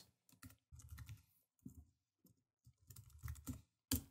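Faint keystrokes on a computer keyboard as a line of code is typed, in short irregular clusters of clicks, with a slightly louder click near the end.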